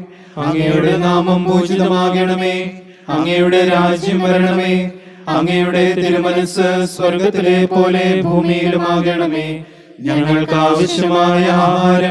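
A man chanting a liturgical prayer of the Holy Qurbana on a steady reciting tone. He sings four held phrases with short breaks between them.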